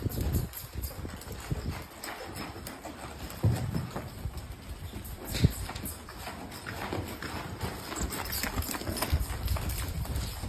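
A ridden horse's hooves thudding in a running beat on sandy arena footing as it lopes, with one sharp knock about five and a half seconds in.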